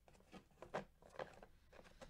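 Faint handling of foil-wrapped trading-card packs by gloved fingers: about five soft taps and rustles spread across the two seconds.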